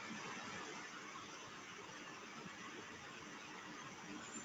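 Faint steady background hiss with no distinct events: the open microphone's room tone.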